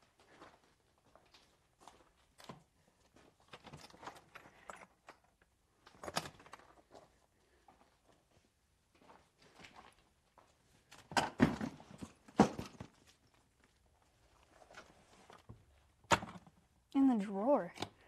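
Footsteps on gravel and scattered knocks and clatter of tools being moved about, the loudest knocks coming about eleven to twelve seconds in and a sharp click near the end.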